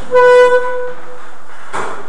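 A single loud pitched beep with a buzzy, horn-like tone. It sounds for about half a second and then fades away, over a steady hiss. A brief rustle comes near the end.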